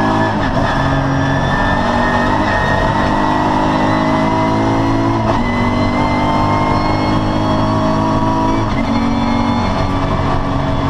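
VW Corrado VR6 race car's VR6 engine at hard throttle, heard from inside the cabin. Its note climbs slowly and is broken briefly about four times as the revs jump.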